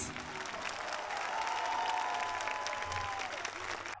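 Studio audience applauding at the end of a sung performance, a dense patter of claps, with a faint held musical note in the middle.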